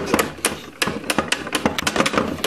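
Rapid plastic clicking from a Pie Face game toy, about seven sharp clicks a second.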